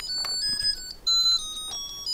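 Zojirushi Neuro Fuzzy rice cooker playing its short electronic beeping melody after its Cooking button is pressed, signalling that the cooking cycle has started. The melody is a string of high single notes stepping up and down in pitch.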